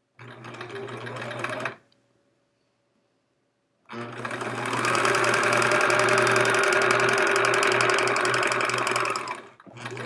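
Electric sewing machine stitching: a short run of about a second and a half, then, after a pause of about two seconds, a longer run that speeds up over its first second, holds steady for about five seconds and stops.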